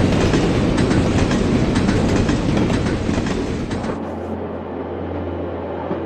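Passenger train running along the track: a loud rush and rattle of wheels on rails. About four seconds in it drops to a quieter, steadier low rumble.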